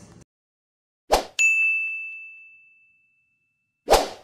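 Edited outro sound effect: a brief rush of noise about a second in, then a single bright bell-like ding that rings and fades away over about a second and a half, and another brief rush of noise near the end.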